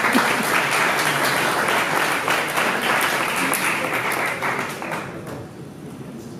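Audience applauding, fading out about five seconds in.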